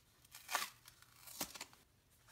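Cardboard and plastic packaging of a pack of paper die-cuts crinkling and tearing as it is opened by hand, with two short, sharper crackles: one about half a second in and one about three-quarters of the way through.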